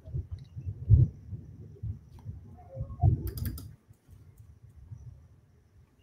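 Scattered clicks and low thuds of a computer keyboard and mouse being worked, loudest about a second in and again about three seconds in.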